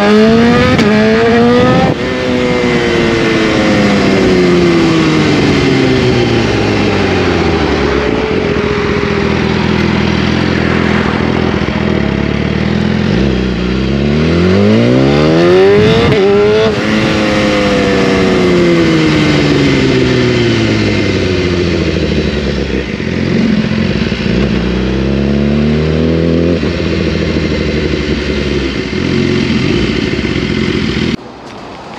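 BMW S1000RR inline-four sportbike with a full Akrapovič exhaust, heard from on board, being ridden hard: the engine revs up with an upshift about two seconds in, then the note falls as the bike slows. It revs up steeply again around the middle with another shift, winds down, revs briefly near the end and settles to a lower, steadier note.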